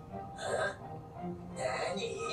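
Anime episode soundtrack playing at low level: soft background music with a character's brief voice sounds, one about half a second in and another near the end.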